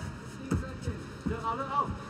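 Quiet ring sound of a Muay Thai bout: a dull thud about half a second in, from the fighters' feet or strikes, and a faint shout in the second half.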